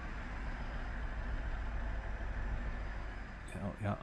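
Lada 2105's four-cylinder engine idling steadily, heard from behind the car near the tailpipe. Its carburettor is not right: the throttle plates are not working as they should and the engine does not really want to run.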